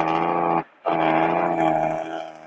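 A vehicle horn sounding twice at one steady pitch: a short blast of about half a second, then a longer one of over a second.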